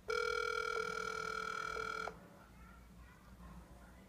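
Smartphone on speakerphone playing the outgoing call's ringback tone: one steady two-second ring that starts and cuts off sharply, meaning the called phone is ringing and has not yet been answered.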